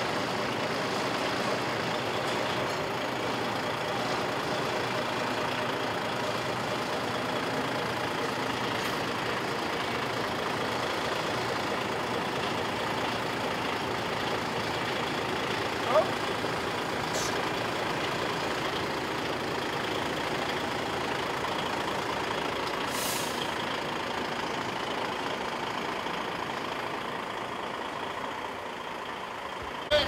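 DAF tractor unit's diesel engine running steadily at low revs while the truck manoeuvres slowly. About halfway there is a short, sharp squeak that slides upward, and later a brief air hiss.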